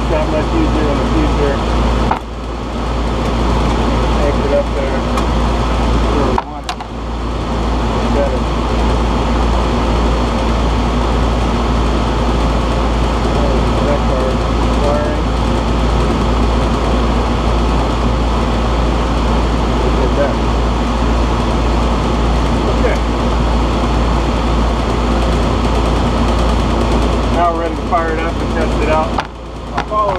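Steady running hum of an air-conditioning condenser unit's fan motor, with the compressor not running: the fault being repaired. The level drops briefly twice, about two and six seconds in.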